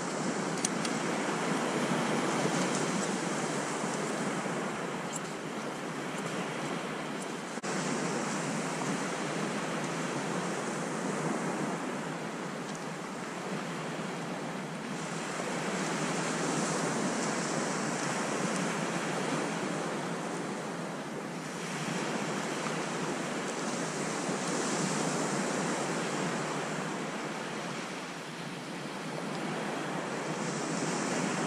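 Small waves breaking on a sandy beach, a steady wash of surf that swells and fades every several seconds, with some wind on the microphone.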